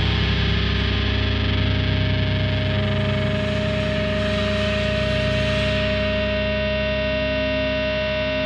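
A distorted electric guitar chord left ringing out as a steady sustained drone, its top end slowly fading over the last seconds.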